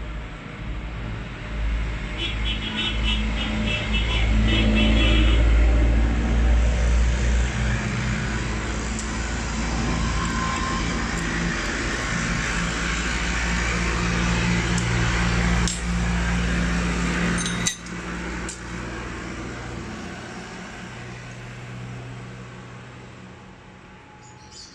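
A motor vehicle running, loudest about five seconds in and slowly fading toward the end. A brief rapid high chirping about two seconds in, and two sharp clicks in the second half.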